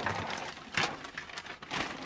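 Small plastic toy pieces being handled and set down on a table, with several light clatters and rustles.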